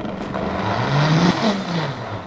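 Countertop blender motor running at high speed, puréeing basil leaves in water: its pitch and loudness climb to a peak about halfway through, then wind down near the end.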